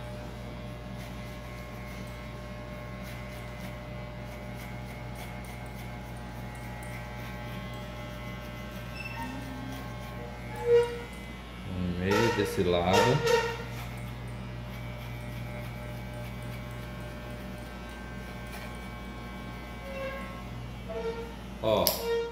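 Electric hair clipper running with a steady hum, blending a low fade with a 1.5 guard. A voice is heard briefly about halfway through, just after a short knock.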